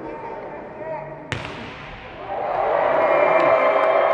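A volleyball struck hard once about a second in, over voices in a large hall. From about two seconds in, a much louder sustained din with steady held tones takes over as the point is won.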